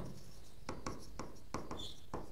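Marker pen writing on a whiteboard: a quick run of short, faint strokes starting a little over half a second in.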